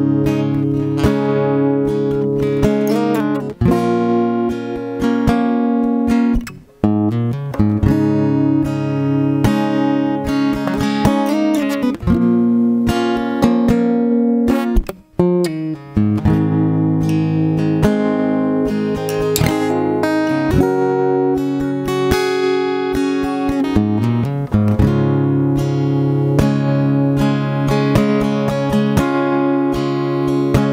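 A solo acoustic guitar strumming chords in a steady rhythm, the instrumental introduction to a song, with two brief breaks between phrases.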